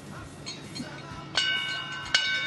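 The International Space Station's ship's bell struck once, about one and a half seconds in, and left ringing with several steady high tones that slowly fade. It is rung to mark the change of station command.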